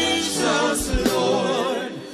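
Live gospel worship singing: a woman's lead voice with backing singers, held notes with vibrato, dipping briefly near the end.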